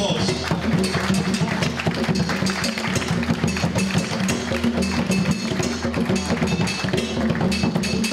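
Several Ghanaian peg-tuned hand drums played with bare hands together, a dense fast run of strokes.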